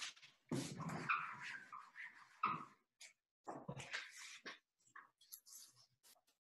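Faint whining in several short, pitched bouts that waver up and down, followed by a few soft clicks.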